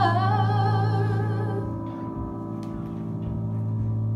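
A woman's voice holds a sung note with vibrato that fades away in the first two seconds, over a sustained accompaniment chord that keeps ringing to the end.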